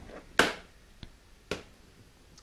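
Metal frying pan of cherries in syrup shaken on a glass-ceramic hob: two sharp knocks of the pan against the glass top, about a second apart, with a faint tick between.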